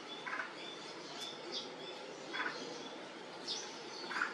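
Small birds chirping: a few brief chirps and thin high whistled notes scattered through, over a steady background hiss.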